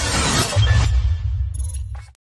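Animated logo sting: a dense, noisy rush that dies away just under a second in, joined about half a second in by a deep bass tone that holds and then cuts off sharply right at the end.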